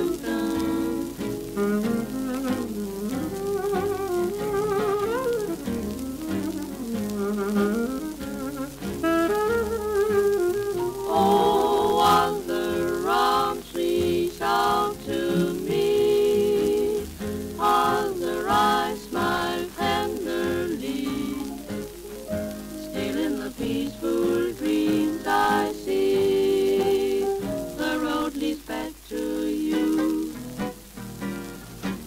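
A small 1940s swing band (reeds, piano, guitar, bass and drums) playing a slow ballad passage without words, heard off an old shellac 78 record with surface crackle under the music.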